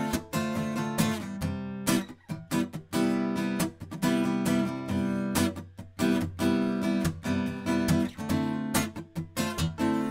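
Acoustic guitar strummed in a steady rhythm, playing the instrumental introduction of a song.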